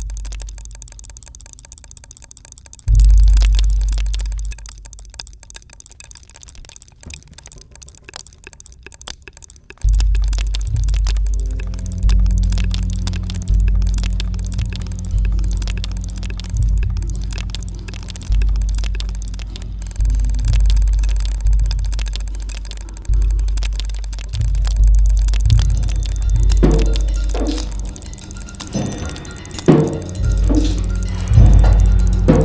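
Layered percussive sound-installation music: rapid dense ticking and clicking runs throughout, with deep booms that strike and die away. The booms settle into a pulse of roughly one each second from about a third of the way in, a steady low hum joins them, and sharper drum-like hits come near the end.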